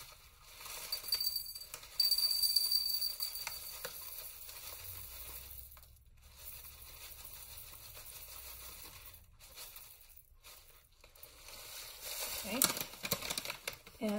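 Dry dewaxed shellac flakes poured from a crinkling plastic pouch into a glass jar, the flakes ticking against the glass. It is loudest in the first few seconds, then carries on more quietly and unevenly.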